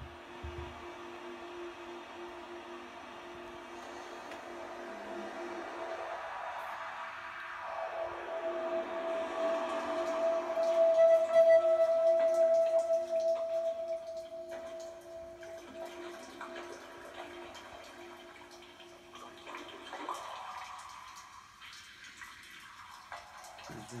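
Electronic ambient sound texture played from a Native Instruments Maschine: a sustained drone of two steady notes under a noisy wash, swelling to its loudest about halfway and easing off, with a filter slowly sweeping through it.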